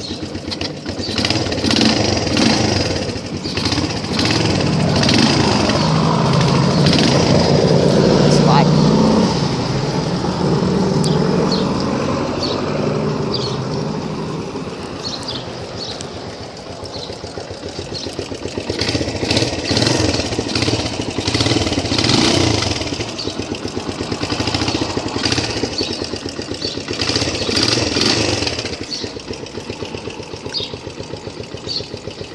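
Suzuki Yes 125 motorcycle's single-cylinder four-stroke engine running and being revved: a long climb in revs peaking about eight seconds in and falling away, then several shorter blips of the throttle in the second half.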